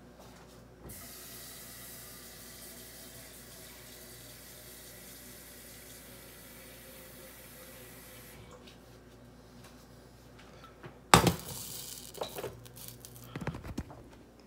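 Kitchen tap running into the sink to fill empty bottles with water, starting about a second in and shut off about eight seconds in. A loud sharp knock follows about three seconds later, then a few smaller knocks.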